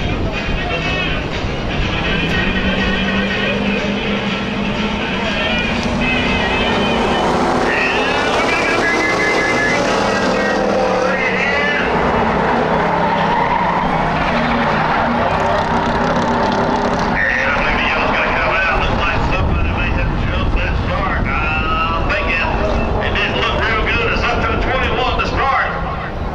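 A pack of Ford Crown Victoria V8 stock cars racing at speed on a dirt oval. The massed engines run continuously, rising and falling in pitch as the cars lift and accelerate through the turns.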